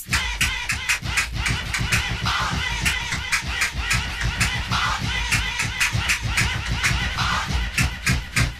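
Instrumental stretch of a mid-1980s electro hip-hop record: an electronic drum beat of quick, even ticks under a busy, warbling layer of sampled sound, with no rapping.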